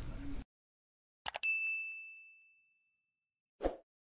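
Two quick clicks, then a single bright, bell-like ding that rings out and fades over about two seconds. Near the end there is a brief soft thud. Both are edited-in sound effects set against dead silence.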